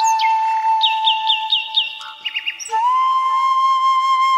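A flute holds one long low note, then slides up to a slightly higher note about three seconds in. Over it a bird chirps a quick run of about five falling notes, then three more a little lower.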